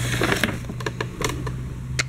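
Paper gift bag rustling as a star-patterned night-light globe is lifted out of it, strongest in the first half second, followed by a few light clicks and knocks of handling. A steady low hum runs underneath.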